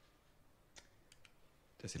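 A few faint, quick clicks of a laptop key or mouse as the presentation slides are advanced, in an otherwise near-silent room.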